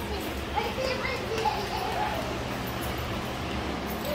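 Faint background voices, children and adults talking, over a steady low hum.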